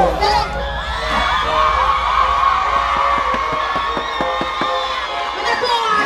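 Large concert crowd cheering and screaming, many high voices held together for several seconds.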